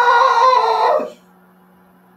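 A man's long, loud scream of excitement held on one high note, cutting off about a second in, as his team scores. A faint steady low hum is left after it.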